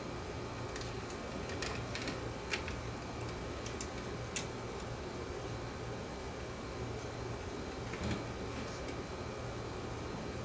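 Small clicks and light scrapes of a small screwdriver and fingers working on a cassette-deck tape mechanism of plastic and metal parts while a drive belt is fitted. There are several clicks in the first half and one more about eight seconds in, over a steady low hum.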